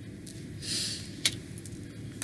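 Tarot cards being handled: a soft swish of a card sliding, then a sharp click a little after a second in, over a steady low hum.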